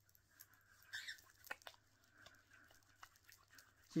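Palms slick with rosemary oil rubbing and pressing together: faint, irregular wet squelches and small clicks.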